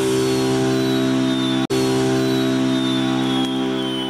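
Television show's title jingle: a held electronic chord with a faint high tone sliding slowly downward. It cuts out for an instant about halfway through and starts to fade near the end.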